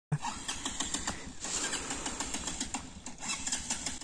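Motorcycle climbing a muddy slope, heard from a distance as a rough, rapid clatter with a hiss of noise.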